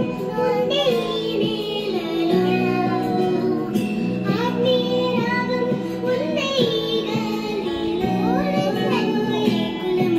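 A song with a child's singing voice over instrumental backing.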